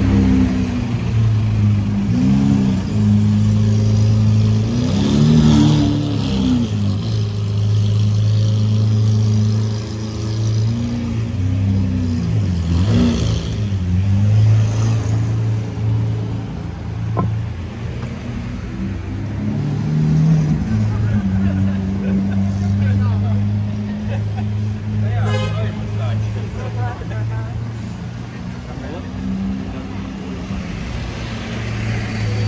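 City street traffic: vehicle engines running with a steady low hum, their pitch bending as vehicles pass and pull away, with people's voices mixed in.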